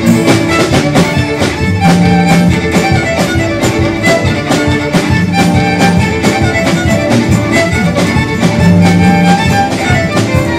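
A live fiddle band playing a lively traditional fiddle tune: the fiddle carries the melody over upright bass, acoustic guitar and a snare drum keeping a steady beat.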